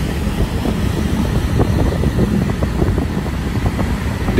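Steady low rumble of a vehicle riding along a city street: engine and road noise with no sharp events.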